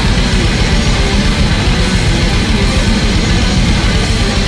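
Black metal band playing live: loud distorted guitars and bass over fast, continuous drumming.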